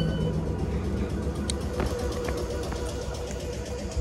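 Low steady rumble of an electric suburban train standing at a station platform with its doors open, with a faint steady hum and a few light clicks.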